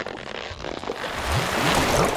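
Cartoon sound effects of a swollen, waterlogged sponge squeezing through a doorway: a wet, squelching hiss, with a few short low rising sweeps in the second half.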